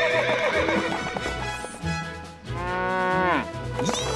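Cartoon background music, with a horse whinny, a single wavering call falling in pitch, about two and a half seconds in.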